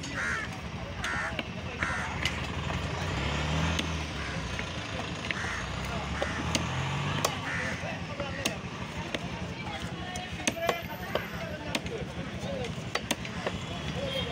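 Cleaver chopping through a large fish on a wooden log block: sharp, irregular knocks, more of them in the second half. Under them are the voices of a busy market and a steady engine rumble.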